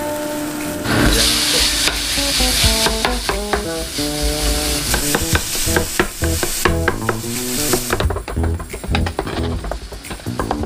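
Minced pork sizzling in a hot frying pan as it is tipped in, the sizzle swelling about a second in. A wooden spatula clicks and scrapes against the pan as the meat is stirred and broken up.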